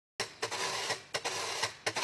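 Metal washboard scraped in a steady rhythm, repeating a short stroke followed by a longer one, a bit under a second per pair, as a percussion intro.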